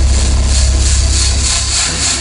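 Heavy, steady low rumble with loud rushing air inside an aircraft in a crash dive; the hiss pulses about four times a second.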